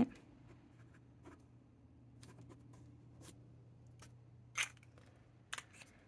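PSP Miwok 2 fountain pen with a Goulet broad nib writing a few words on paper: faint, scattered scratches and ticks. A sharper tick comes about four and a half seconds in, and a couple more near the end.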